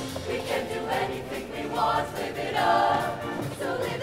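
Show choir singing together, with a live band playing behind them.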